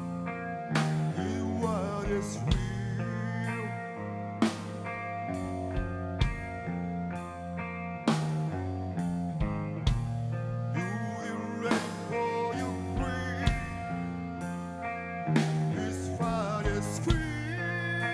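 Live rock band: an electric guitar through a Marshall amp holding sustained chords over a drum kit, with heavy accented drum and cymbal hits about every two seconds.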